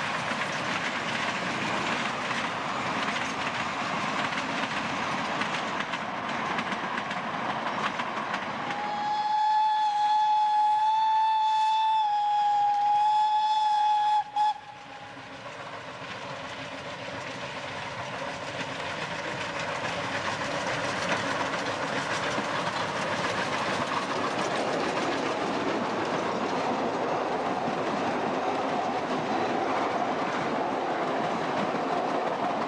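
Narrow-gauge steam train with two steam locomotives passing, its coaches running steadily over the track. About nine seconds in, a steam whistle blows one long steady note for roughly five seconds, then cuts off suddenly, and the train's running continues.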